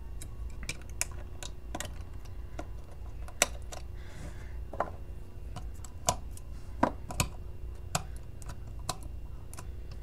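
Small, irregular clicks and taps of metal tweezers and fingers on an iPhone 7 Plus's parts as the repaired logic board is fitted back into its housing, over a steady low hum.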